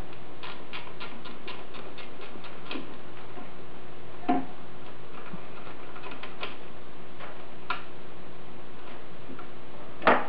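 Ratchet wrench clicking in quick runs of about four clicks a second as a bolt on the power steering pump bracket is worked loose. There are a couple of sharper metal knocks between the runs, over a faint steady hum.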